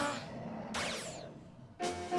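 Anime episode soundtrack: a quick falling swoosh effect about a second in, then music with held notes starting near the end.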